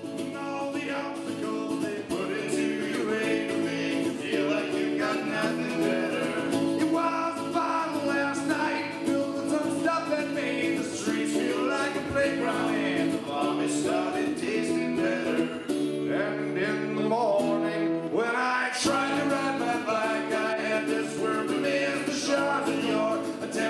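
Live acoustic band performance: a strummed acoustic guitar with male singing, rising in level over the first couple of seconds and then playing steadily.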